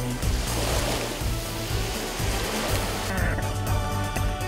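Sea water splashing and rushing at the surface as a diver swims, over background music with steady bass notes; the water sound stops about three seconds in.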